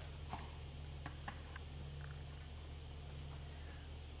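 Quiet room tone with a steady low electrical hum and a few faint clicks in the first second or so.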